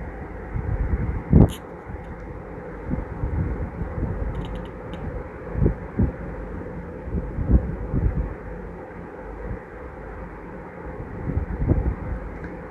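Plastic weaving wire being handled and worked by hand close to the microphone: a low rubbing rumble with scattered sharp knocks, the loudest about a second and a half in, and a few faint clicks.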